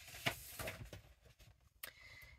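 Faint handling sounds as a plastic paper trimmer is fetched and brought over the stamped cardstock: a soft knock about a quarter second in, some light rustling, and a sharp click near the end.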